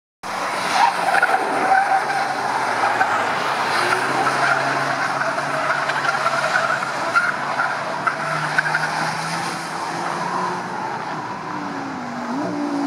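Cars being driven hard on a race circuit, engines running at high revs, with tyres squealing through the corner. A second engine note joins about eight seconds in.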